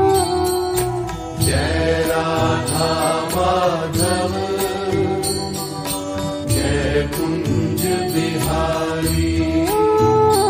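Devotional Hindu bhajan music to Krishna: long held melodic notes sliding from pitch to pitch, over light percussion keeping a steady beat.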